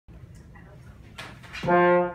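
A trombone comes in with a loud held note about a second and a half in, sliding up slightly into the pitch at its start, after quiet room noise.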